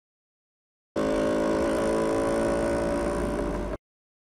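Vespa scooter's small engine running steadily as the scooter pulls away. The sound starts abruptly about a second in and cuts off abruptly near the end.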